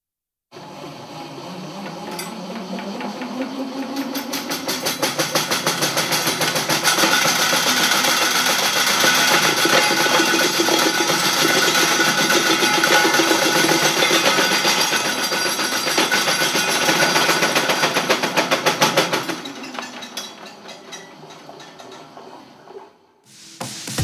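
Rotating metal tumble-test cage: a motor hum that rises in pitch as it spins up, then rapid metallic rattling and clattering. The rattling builds and holds loud, then fades away near the end.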